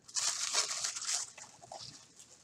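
Plastic wrapping crinkling and rustling as a small packaged item is unwrapped by hand, loudest in the first second, then fading to a few faint rustles.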